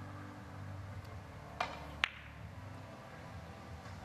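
Two sharp clicks about half a second apart on a three-cushion carom billiards table: the cue tip striking the cue ball, then the cue ball hitting the object ball. The second click is the brighter and rings briefly. Both sit over a low steady hum from the hall.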